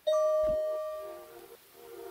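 Background music: a single bell-like note rings out at the start and fades over about a second and a half, with a short low thud under it, then softer notes come in near the end.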